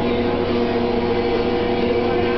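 A steady hum holding several fixed low pitches, unchanging throughout.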